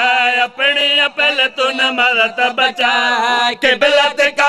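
A man chanting religious verse in a sung, melodic delivery, with long held notes broken by brief pauses for breath.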